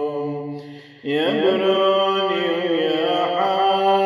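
A male deacon's solo voice chanting a church hymn in long held notes. About a second in he breaks off briefly, then slides up into a new sustained note that later wavers with vibrato.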